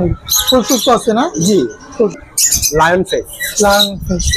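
Caged birds squawking over talking voices.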